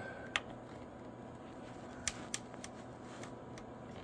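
A handful of faint, separate clicks from the rotary control knob of a President George FCC CB radio being turned, stepping the RF power up to its maximum setting, over a low steady background hiss.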